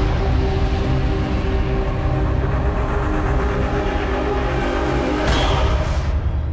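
Cinematic intro music for an animated logo: sustained low chords over heavy bass, with a bright sweeping hit a little past five seconds in.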